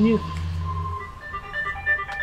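Mobile phone ringtone: a simple electronic melody of clean beeping notes that starts about a second in, over a steady low hum.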